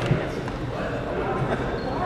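Echoing gymnasium murmur of indistinct spectator chatter, with one sharp basketball bounce at the very start.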